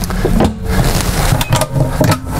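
Handling noise from overhead cabinet doors being worked open: a dense rustling clatter with a few sharp clicks about a second and a half in.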